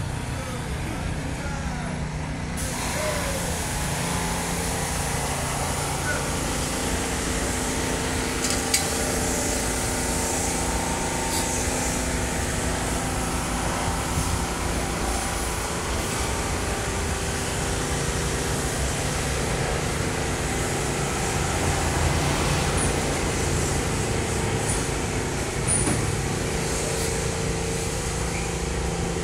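Steady city street traffic noise: the hum of idling and passing motor vehicles, with engine drone held on long steady tones.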